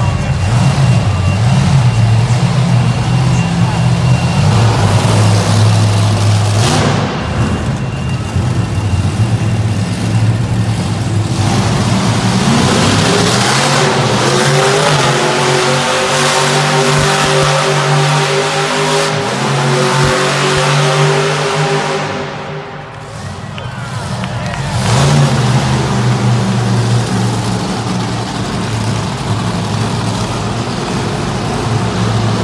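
A monster truck's engine revving hard while the truck spins donuts. The pitch climbs and holds high for several seconds, drops off briefly about three-quarters of the way through, then revs up again.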